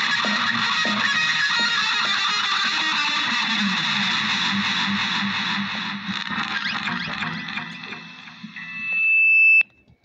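Electric guitar played through effects and distortion in a dense, psychedelic wash that fades away over the last few seconds. Near the end a single high, held tone swells up loudly and cuts off suddenly.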